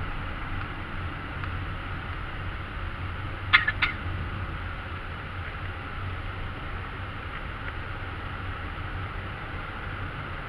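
Steady road and engine noise of a car driving, heard from inside the cabin, with a low hum underneath. About three and a half seconds in come two short, sharp clicks about a third of a second apart.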